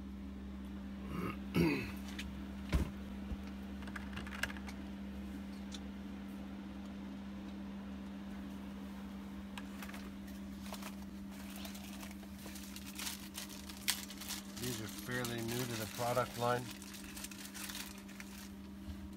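A steady low hum, with scattered light clicks and rustles in the second half, and a few murmured words near the end.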